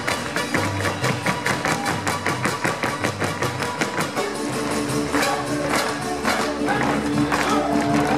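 Lively Mexican folk dance music with rapid rhythmic tapping throughout, typical of the dancers' boots stamping zapateado steps on the stage. About four seconds in, sustained held notes come in over the rhythm.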